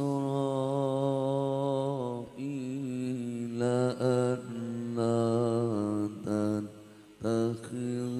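A man reciting the Quran in melodic tilawah style into a microphone. He holds long, ornamented notes whose pitch wavers and turns, with a short break for breath near the end.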